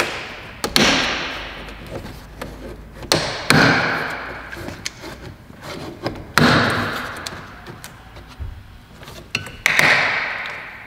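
Plastic retaining clips of a BMW X1 E84 rear door's upper trim strip snapping loose one after another as the strip is pried off with a plastic trim tool. There are about five sharp snaps spread through, each fading over a second or so, with small ticks and scrapes of plastic between them.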